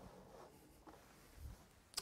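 Near silence with faint handling noise as a Macintosh Portable's plastic case is set down on a wooden desk: a soft low thump about one and a half seconds in, then a brief click near the end.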